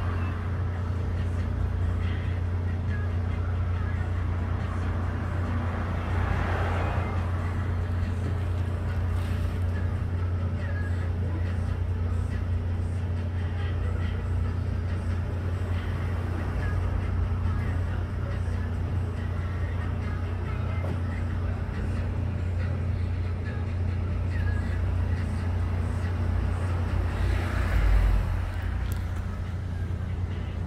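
Steady low machine hum with street background noise, swelling briefly louder about six seconds in and again near the end.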